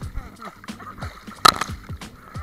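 Lake water splashed by hand against a camera held at the surface: a run of quick, sharp splashes and slaps, the loudest about one and a half seconds in.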